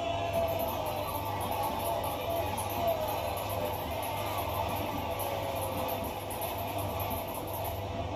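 Televised wrestling arena audio: a steady crowd din from the broadcast, with a low hum underneath.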